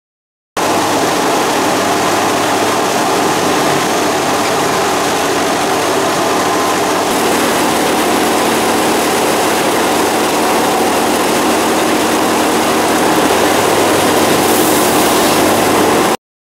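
Threshing machine running steadily as harvested crop is fed into it: a continuous loud machine noise with a steady engine hum beneath it, starting abruptly about half a second in.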